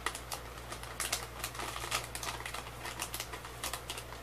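Plastic snack bag being handled: irregular crinkles and sharp little clicks, several a second.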